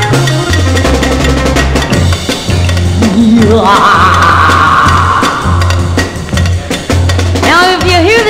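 Instrumental break in an early-1960s surf-style rock-and-roll record: drums and a repeating bass figure, with a sustained higher sound for about two seconds in the middle.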